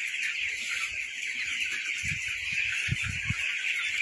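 Continuous high-pitched peeping of a large flock of young broiler chicks, with a few soft low thumps about two to three seconds in.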